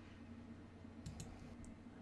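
Very quiet room tone with a faint low hum and a few soft, separate clicks about a second in.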